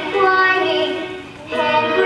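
A young girl singing long held notes of a stage-musical song, with a short break about a second and a half in before the next phrase begins.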